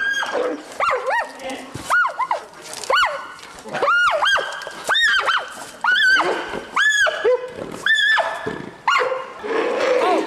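Giant panda squealing in distress during a fight. It gives a string of high-pitched calls that rise and fall, about one a second, with a few lower calls in between.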